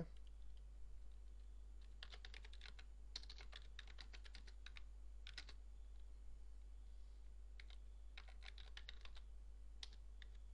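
Typing on a computer keyboard: faint keystroke clicks in several quick runs, with short pauses between them.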